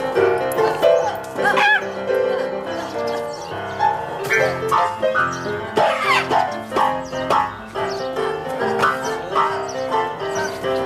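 Piano playing a twelve-bar blues, with several short, high-pitched squeaky animal calls that slide up and down in pitch over the music.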